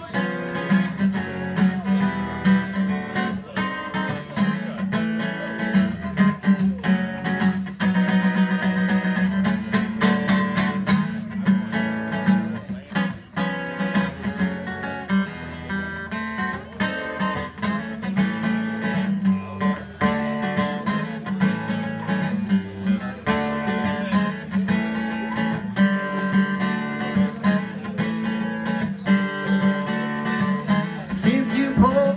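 Acoustic guitar strummed and picked live in an instrumental stretch of a song, with a steady rhythm and no singing.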